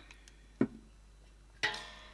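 Cosmetic bottles handled over a table: a sharp click about half a second in as a spray bottle is set down, then a second knock with a short fading tail as a glass spray bottle is picked up.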